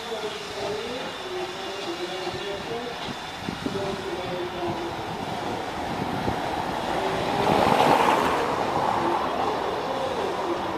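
Steam-hauled passenger train pulling away: a Hudswell Clarke 0-6-0T tank engine drawing its coaches past over a rail bridge, with a steady rumble of wheels and a few sharp clanks. The noise swells to its loudest about three-quarters of the way through.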